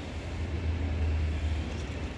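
A steady low rumble, strongest in the middle, over a faint hiss.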